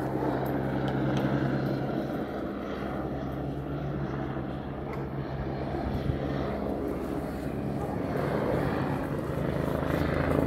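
A steady, low engine drone, strongest in the first two seconds, then fading.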